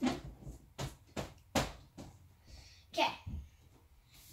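A run of short, irregular scrubbing strokes and taps on a whiteboard as marker is wiped off the board.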